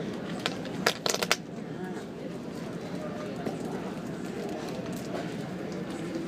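Steady low drone of a passenger ferry under way, heard from inside the cabin, with faint voices in the background. About a second in comes a quick cluster of four sharp clicks.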